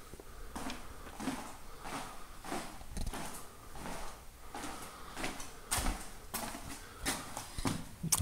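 Footsteps on a hard floor, about two steps a second, walking through a house.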